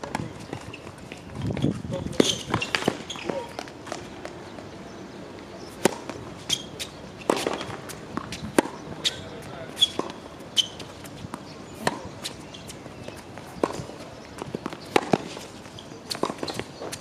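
Tennis rally on an outdoor hard court: sharp racket strikes and ball bounces at an irregular pace, often less than a second apart.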